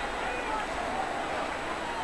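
Steady background noise of a ballpark during play, with faint distant voices from players and spectators.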